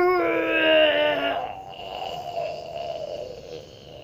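A child's long wailing whine, falling slightly in pitch, that breaks off about a second and a half in and trails into a quieter, breathy moan that fades away.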